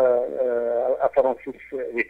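Speech: a person talking, drawing out one long syllable in the first second, in a narrow-band recording.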